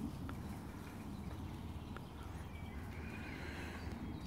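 Wild boar grunting low while rooting and foraging in the forest litter, with a few faint clicks of twigs underfoot.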